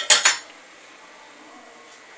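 A metal ladle clinking twice, quickly, against a metal pressure cooker pot in the first half second.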